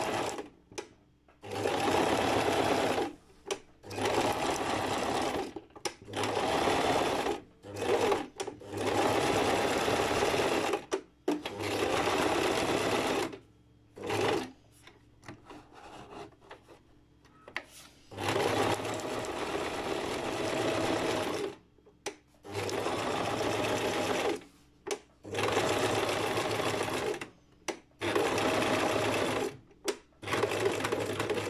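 Electric household sewing machine stitching a zigzag seam through fabric in short runs of one to three seconds. It stops and starts about a dozen times, with a longer pause a little past the middle.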